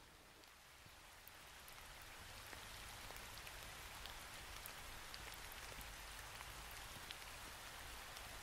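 Light rain falling: a faint, steady hiss of rain with scattered small drop ticks, fading in over the first second or two.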